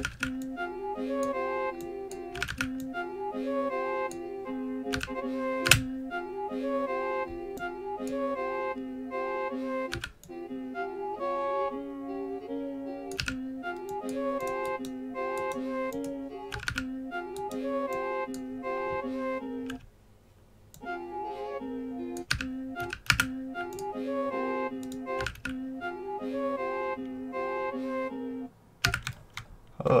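A sliced melody of layered orchestral flute and bell samples playing back from FL Studio's Fruity Slicer, its chopped pieces re-sequenced into a stuttering, repeating pattern, with computer keyboard clicks over it. Playback cuts out briefly about two-thirds of the way through and again near the end.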